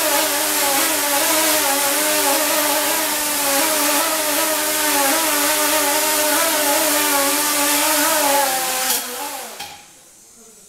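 Small electric propellers at the end of a cantilevered camera rod, running with a steady buzzing whine whose pitch wavers up and down. The motors spin down about nine seconds in.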